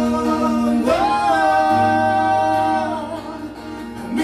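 Live song by two male singers with acoustic guitar: a held note, then a slide up about a second in to a long high sustained note that fades near three seconds, leaving quieter playing.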